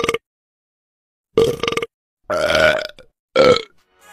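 A run of four short, croaky belches, each cut off sharply into dead silence, the third the longest.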